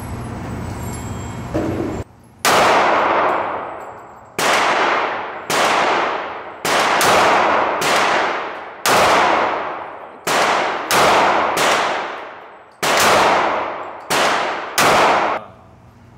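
A handgun fired about a dozen times at an uneven pace, roughly a shot a second, each shot ringing on with a long echo in an indoor range. A steady background hum fills the first two seconds before the first shot.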